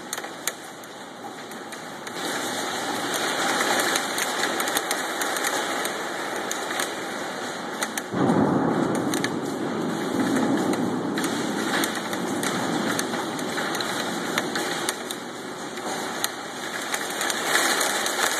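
Heavy hail hitting window glass: a dense, rapid clatter of countless small impacts over a steady rush. It grows louder about two seconds in and surges again about eight seconds in.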